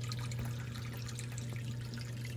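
Water trickling steadily over a low, constant hum from a filter pump running on a koi stock tank.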